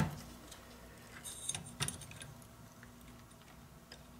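Faint handling noise from a desktop computer's plastic hard drive carrier being unclipped and lifted out of the chassis: a few small clicks and rustles a little over a second in.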